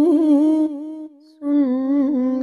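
A woman humming the melody of a naat in slow, held notes with a wavering pitch, with no instruments. The voice drops away for a moment a little after a second in and comes back near the end.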